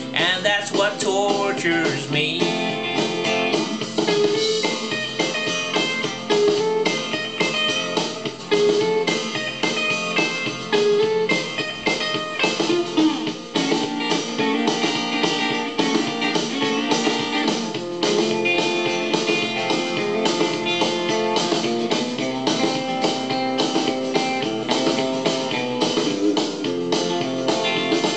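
Guitar playing an instrumental break in a blues song, a steady run of picked and strummed notes with no singing.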